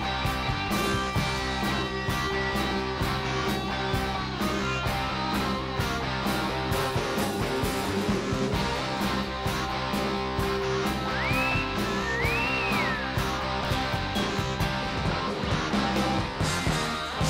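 Rock band playing an instrumental passage: electric guitar over drums with a steady beat, and two high sliding notes that rise and fall near the middle.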